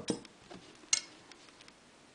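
Two light, sharp clicks from scissors about a second apart, as the cotton yarn is cut.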